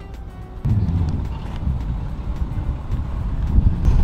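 Wind buffeting the microphone outdoors: a loud, uneven low rumble that starts abruptly under a second in.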